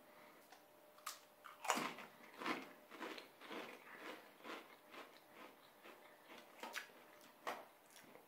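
A person biting into a Pringles potato crisp and chewing it with the mouth closed: a faint run of crisp crunches, the sharpest one at the first bite about a second and a half in, then about two or three crunches a second.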